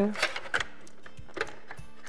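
A few light, separate metallic clicks and taps as aluminium banner-pole sections are pressed into the holder on a roll-up banner's base cassette.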